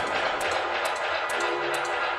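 Steppa dub music played through a sound system, loud and continuous: a low bass pulse under held chords, with regular high ticks keeping the beat.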